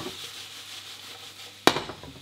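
Sliced onions sizzling in a hot sauté pan as a spatula stirs and scrapes them, with one sharp knock shortly before the end.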